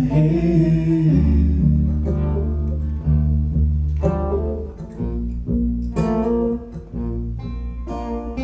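Live acoustic folk band playing: a sung note ends about a second in, then strummed and picked acoustic guitars go on over low, held bass notes.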